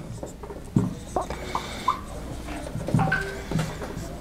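Dry-erase marker writing on a whiteboard: short scratchy strokes with a few brief high squeaks of the felt tip on the board.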